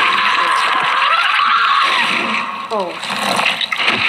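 Loud, harsh, hissing noise from a horror film soundtrack for the first two and a half seconds. Then a voice gives a short "oh" that falls in pitch.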